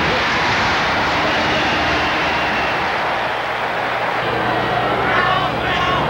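A large stadium crowd cheering as a steady roar after a pass play, easing slightly near the end.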